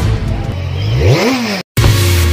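Logo-intro sound effect of an engine revving: its pitch climbs sharply about a second in and drops back. It cuts out briefly near the end, and electronic dance music starts right after.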